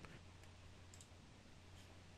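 Near silence with a faint low hum, broken by a few faint computer mouse clicks about half a second and one second in.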